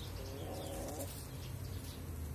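A domestic hen's single low, trilling call, about a second long, made while feeding.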